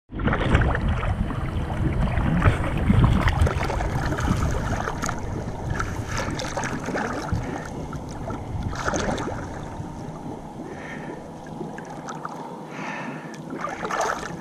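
Lake water lapping and sloshing around a GoPro held at the surface, with small splashes and wind on the microphone. It is louder in the first half and eases off later.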